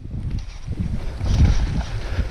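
Uneven rumbling wind buffeting and handling noise on an action camera's microphone as the camera jolts about while a hooked bass is fought from the bank.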